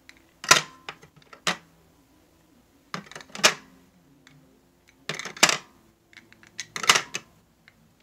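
2x2 coin holders clacking as they are handled and set into a storage box: a series of sharp clicks and knocks, about five bursts a second or two apart.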